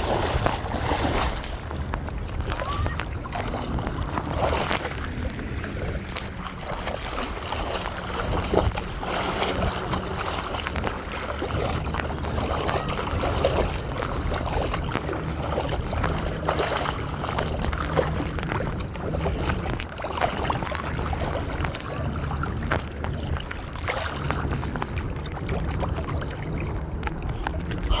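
Small boat under way on choppy sea: a steady low engine hum under the continual rush and splash of water against the hull.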